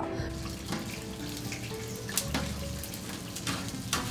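Kitchen sound: a steady watery rushing hiss with a few sharp metallic clicks, under soft background music.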